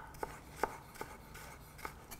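Chef's knife slicing fresh ginger into matchsticks on a wooden chopping board: about five short, separate cuts, each a quick tap of the blade through the ginger onto the board.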